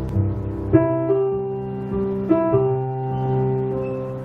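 Live band playing a song's instrumental intro: sustained chords on a stage keyboard over bass guitar, with new chords struck every second or two and no singing yet.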